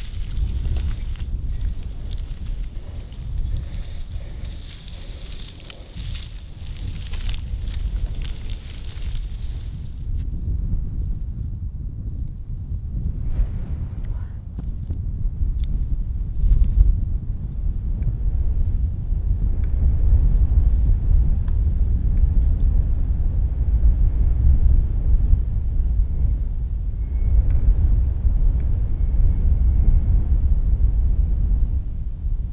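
Wind buffeting the microphone, heard as a steady low rumble that gets louder in the second half. For the first ten seconds, dry cane stalks crackle and snap as someone pushes through them.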